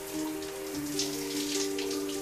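Shower spray running steadily, a spattering hiss of water, under soft synth music with long held notes.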